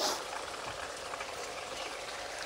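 A brief rustle right at the start, then a steady low hiss of outdoor background noise.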